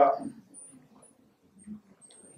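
A man's drawn-out spoken word trailing off at the start, then a pause with only faint room sound.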